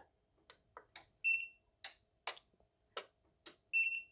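EcoFlow Delta Pro power station giving two short, high beeps a couple of seconds apart, amid scattered light clicks of hands on the unit and its cable, as the restart fails on overload error 109.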